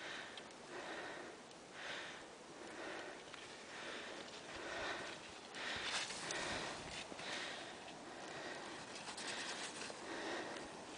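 Heavy breathing of a skier filming while skiing, quick noisy breaths in and out about once a second from the exertion of skiing.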